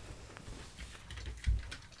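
A single dull, low thump about one and a half seconds in, over faint low rumble and a few small ticks in a quiet small room.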